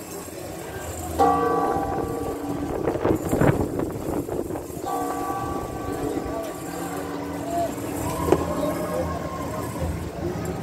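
Cathedral tower bells pealing for the second call to Mass: strokes about a second in and about five seconds in, each ringing on with several steady tones, and another bell ringing on near the end, over background voices.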